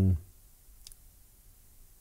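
A single faint click about a second in, from a hand-assembled Stratocaster single-coil pickup bobbin (fibre flatwork with magnets) being handled; otherwise quiet room tone.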